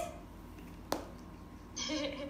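A single sharp tap about a second in, over quiet room tone, followed near the end by a laugh and a voice.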